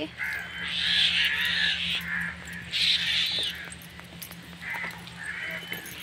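Crows cawing: several harsh caws in quick succession, loudest in the first half, with a couple of fainter ones near the end.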